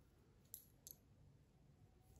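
Near silence: faint room tone with two small clicks, about half a second and about a second in.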